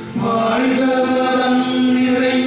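A group of voices singing a slow hymn, holding long notes.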